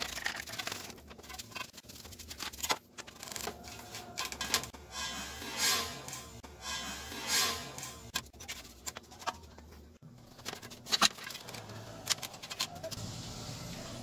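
A paintbrush scrubbing dust off the back of a CRT picture tube and its deflection yoke. It makes irregular scratchy brushing strokes with scattered clicks of handling.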